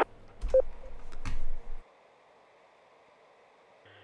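Amateur radio repeater tail after a transmission ends. A short beep and a couple of clicks come over a low rush for about a second and a half, then the channel drops to near silence. Just before the end the next station keys up with a steady low hum.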